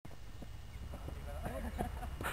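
Steady low wind rumble on the microphone with faint distant voices from about a second in, and a few light knocks.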